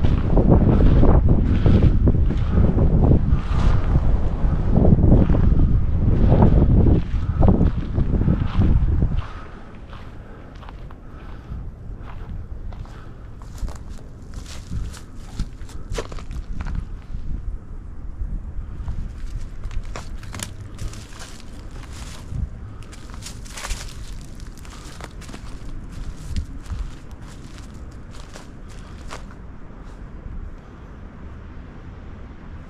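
Footsteps of a person walking over woodland ground, with irregular crunches and snaps. A loud low rumble covers the first nine seconds or so and then drops away suddenly.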